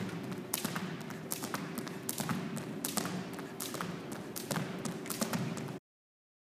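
Two thin plastic jump ropes slapping a wooden gym floor in a steady rhythm, about two to three slaps a second, mixed with the light landings of the jumpers' sneakers. The sound cuts off suddenly near the end.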